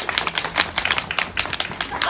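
Applause from a small audience: many separate hand claps in a quick, irregular patter.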